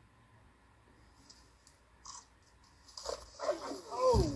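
Leopards snarling in a sudden loud outburst about three seconds in, after a quiet stretch with a few faint rustles.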